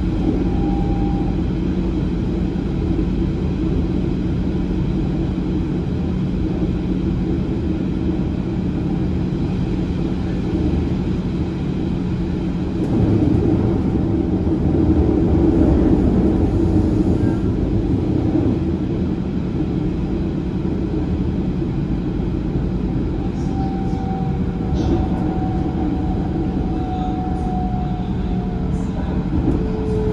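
Passenger train rolling along the track, heard from inside the carriage: a steady rumble with a constant low hum. The noise swells for a few seconds midway as it runs over points, and a faint whine comes in near the end.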